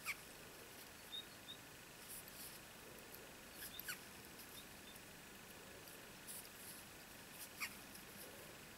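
Faint squeaks and light ticks of yarn being pulled over a crochet hook while stitching around a ring, three short falling squeaks a few seconds apart over a quiet hiss.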